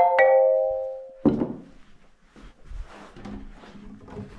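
Xylophone notes struck in quick succession, the last two about a fifth of a second apart and ringing out for about a second. Then a single thunk, followed by faint scratchy rustling.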